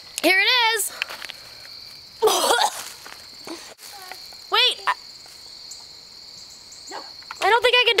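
A woman's wordless, high-pitched squeals of disgust and a rough gagging sound, in several short bursts, while scooping up dog droppings in a plastic bag. Crickets chirp steadily behind.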